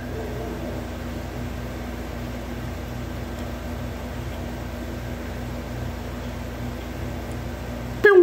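Dremel rotary tool with a cutting blade running steadily, its motor holding one even pitch as the blade scores and scars a piece of wood.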